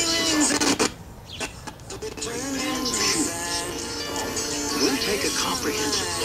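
Crystal radio reception coming through a small speaker. A station playing music with singing drops out about a second in, with a few clicks as the tuning wire is moved between coil taps. Then a talking voice comes in over music: two stations heard mixed together.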